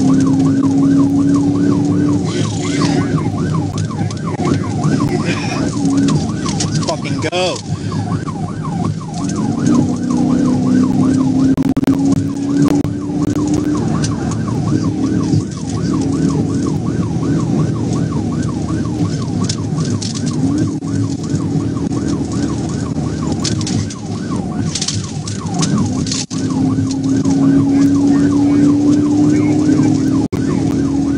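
Police car siren in a rapid yelp, its pitch sweeping up and down several times a second without a break, heard from inside the pursuing patrol car at highway speed, with steady engine and road noise beneath it and a low steady hum that comes and goes.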